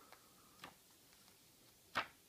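Pages of a children's picture book being turned by a small child's hand: a few faint, irregular paper flicks, the sharpest near the end.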